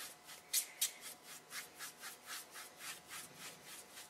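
Paintbrush scrubbing a very watery acrylic wash onto canvas in quick, even back-and-forth strokes, about four a second.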